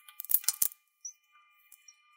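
Felt-tip marker writing on a glass board: a quick run of taps and squeaky strokes in the first half-second or so, then only faint ticks.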